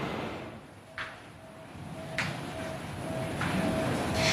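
Short electronic beeps at one steady pitch, repeating about twice a second, over a steady hiss of outdoor background noise.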